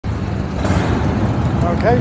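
BMW R1250RT motorcycle's boxer-twin engine idling steadily.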